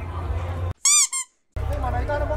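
Edited-in cartoon squeak sound effect: two high-pitched squeaks, each sliding up and then down in pitch, a longer one followed by a short one, played over a sudden cut to total silence in the street noise.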